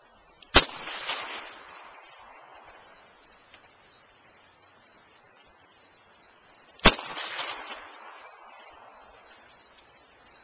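Two shots from a revolver fired double-action, about six seconds apart, each a sharp crack followed by roughly a second of echo.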